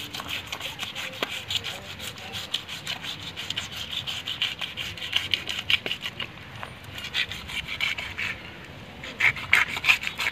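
Knife blade scraping the scales off a large freshwater fish, in rapid repeated strokes. The strokes are loudest near the end.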